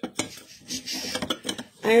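Scentsy warmer's lampshade being turned by hand on its base: a run of small clicks and scrapes of hard parts rubbing and knocking together.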